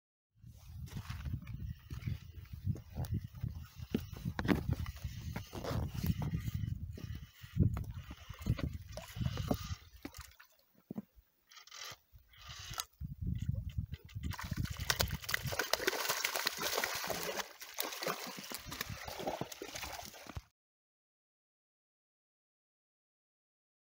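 Shallow lake water sloshing and lapping among shoreline rocks around a trout in the shallows, with wind buffeting the microphone through the first half. Near the middle it drops away in brief fragments, then a steadier, hissier wash of water runs on until it cuts off suddenly.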